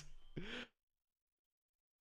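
A man's short gasping breath as his laughter dies away, about half a second in, after which the sound cuts out to silence.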